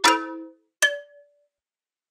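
Bell-like struck notes from a trap melody loop. Two notes sound, one at the start and one just under a second in, each ringing briefly and dying away.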